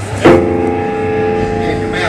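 Distorted electric guitar and bass hit a chord about a quarter second in and let it ring out, a steady held tone, as a metal band starts its next song.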